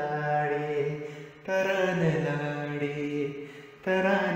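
A man's voice chanting a melody in long held notes, each phrase sliding down in pitch at its end. A new phrase begins about a second and a half in and another just before the end.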